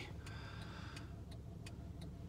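Car's blinker flasher ticking steadily, roughly three soft clicks a second, over a low steady hum.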